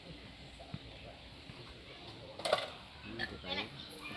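A short clatter of small objects being handled comes about two and a half seconds in, then brief faint voices near the end.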